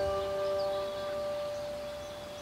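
Background music dying away: a few held notes fading slowly, the lower one stopping about halfway through.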